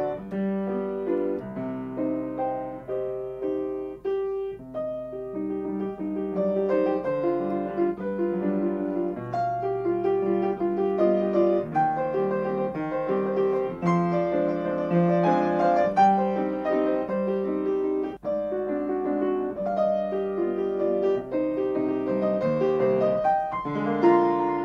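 Solo grand piano playing a classical waltz from around 1900, continuous, with the playing growing fuller and louder toward the middle.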